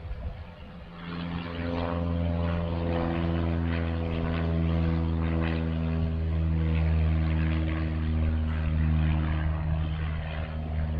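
Propeller airplane flying past overhead. Its engine drone comes in about a second in and holds steady.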